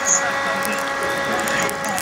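Small handheld battery fan running with a steady whine as it blows air onto a charcoal grill, with faint crackling from the hot coals.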